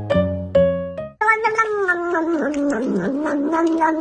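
Piano music that cuts off about a second in, followed by a serval kitten's long, continuous, wavering whine-growl as it suckles from a feeding bottle, with regular clicks running alongside.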